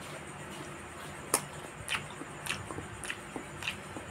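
Close-miked chewing of a mouthful of steamed white rice: a string of sharp, wet mouth clicks and smacks, about one every half second, starting a little over a second in, the first one loudest. A low steady hum runs underneath.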